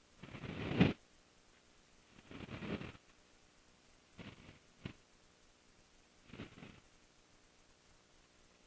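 Five short bursts of noise picked up through the aircraft's headset intercom, the first and loudest swelling and then cutting off sharply, with near quiet between bursts and no engine heard.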